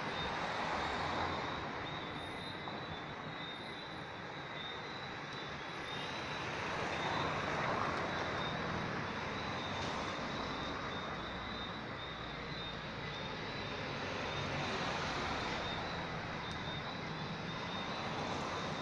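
Road traffic at night: cars driving past, their engine and tyre noise swelling and fading, loudest about seven to eight seconds in and again near fifteen seconds. A thin steady high-pitched tone runs throughout.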